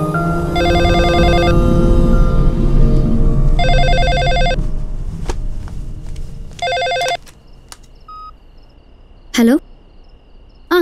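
Cordless telephone ringing with an electronic ring, three rings about three seconds apart, the third cut short as the handset is picked up. A short beep follows.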